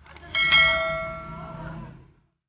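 Notification-bell sound effect of a subscribe-button animation: a faint click, then a bright bell ding that rings and fades out over about a second and a half.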